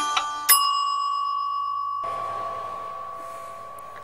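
The last notes of quick, tinkling mallet-percussion music, then a single bell ding about half a second in that rings on and fades slowly: a timer chime marking that the ten minutes of baking are up.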